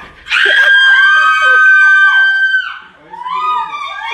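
A woman screaming in shock: one long high scream of about two seconds, then a second, shorter scream near the end.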